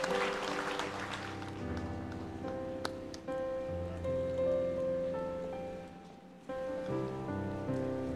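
Background music of slow, sustained chords, briefly dropping away about six seconds in before resuming, with applause dying away over the first couple of seconds.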